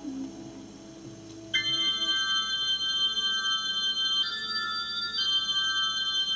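Unaccompanied organ playing thin, icy sustained chords in a high register. They enter about a second and a half in, after the previous music has died down, and the chord shifts twice.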